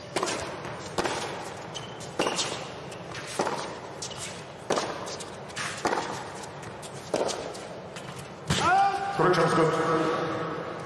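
Tennis ball struck back and forth by racquets in a baseline rally: sharp pops about every 1.2 seconds, starting with the serve. The strikes stop near the end and voices rise as the point ends.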